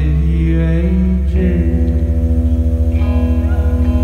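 Live rock band playing a slow song: sustained electric guitar and keyboard chords over a heavy droning bass, with a sung voice gliding through the first second. After about a second the sound takes on a quick, even pulse.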